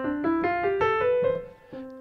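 Sampled piano played from a MIDI keyboard: an ascending C major scale, eight notes climbing in about a second and a half, then the low C struck again near the end.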